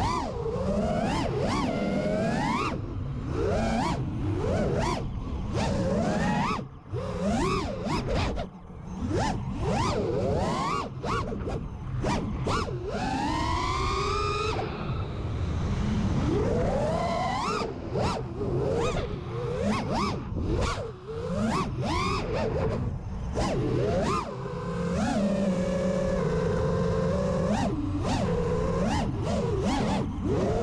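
Five-inch FPV quadcopter's brushless motors (Amax 2306 2500kv, three-blade 5-inch props) whining, their pitch sweeping up and down constantly with the throttle, among short rushes of wind and prop noise. There is one long rising throttle punch about halfway through, and a steadier hum for a few seconds near the end.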